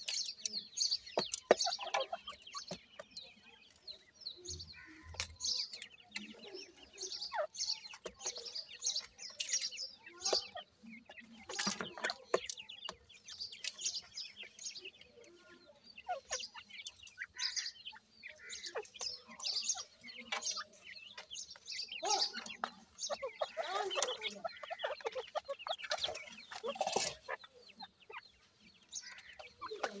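Francolin chicks and an adult calling with many short, high chirps and soft clucks, in scattered bursts, over light clicks and scratches as they peck in dry soil.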